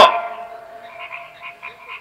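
The echo of an amplified voice dies away at the start, leaving a faint steady hum and faint rapid pulsed calls in the background, several a second.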